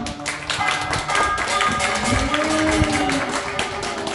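Instrumental backing track playing, with a steady beat of sharp claps or taps, about four a second.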